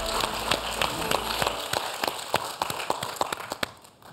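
Applause from a few people clapping by hand, the claps thinning out and stopping shortly before the end.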